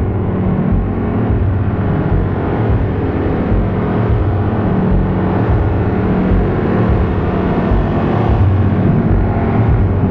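Eurorack modular synthesizer playing a dense, rumbling low drone, with a bass tone that comes and goes about once a second under a noisy wash.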